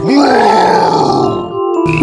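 A bear growl: one rough growl about a second and a half long that rises and then falls away, over background music.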